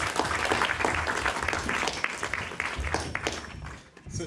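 Lecture audience applauding, dying away near the end.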